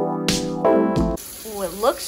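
Background music with a beat cuts off suddenly about a second in. It gives way to the sizzle of pasta and tomato sauce cooking in a skillet, with a short vocal sound near the end.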